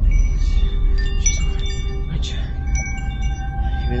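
Chimes ringing: many short, clear high tones at different pitches sounding at irregular moments, over a loud steady low rumble that comes in suddenly just before.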